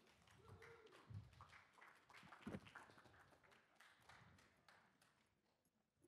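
Faint scattered audience applause, irregular claps that thin out and stop about four and a half seconds in, with a few low thuds.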